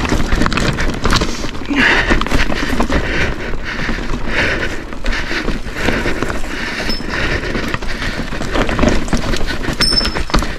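Whyte S150 mountain bike rolling over a loose, rocky trail: tyres crunching on stones with a steady clatter of rattles and knocks from the chain and frame.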